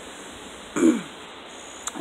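A woman's short throat-clearing grunt, falling in pitch, about a second in, with a faint click near the end.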